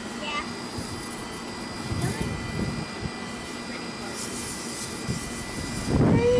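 A low steady rumble with faint voices in the background.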